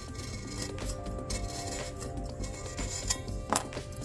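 Background music, with a few light clicks and scrapes of a razor blade trimming leftover powder coat along the rim of a stainless steel tumbler.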